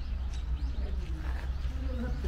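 Steady low wind noise on the camera microphone, with faint short bird chirps over it.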